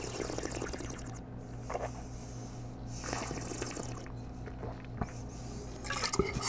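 A taster aerating a mouthful of red wine: two long hissing slurps of air drawn through the wine, at the start and about three seconds in, with small wet swishing sounds between. Near the end the wine is spat into a stainless steel spit cup.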